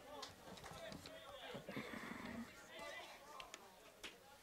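Faint, distant voices calling out across the lacrosse field during play, with a few light clicks.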